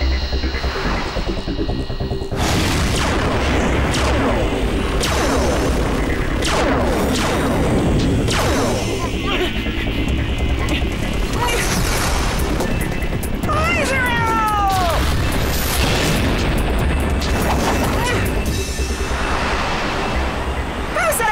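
Animated sci-fi action soundtrack: driving music under repeated synthetic blast, zap and whoosh effects with booms and crashes, over a steady low hum from the hovering vehicles. About fourteen seconds in comes a falling electronic squeal.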